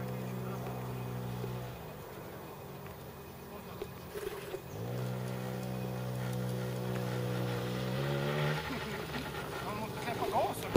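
Small children's quad bike engine running steadily, dropping off about two seconds in, picking up again about five seconds in and rising once more near eight seconds before it falls away.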